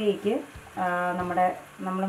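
A voice with background music; no cooking sound stands out.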